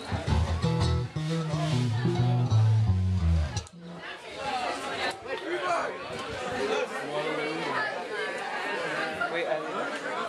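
Electric bass guitar through an amp playing a short line of held low notes, which stops abruptly about four seconds in. After that a roomful of people chatter.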